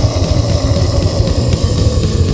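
Death metal band playing at full volume: fast, dense drumming with rapid kick-drum hits under distorted electric guitars, with a sustained, wavering note held over it.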